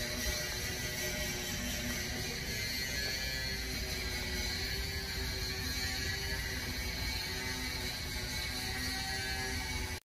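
A steady mechanical running sound with a few held tones, which cuts off abruptly at the end.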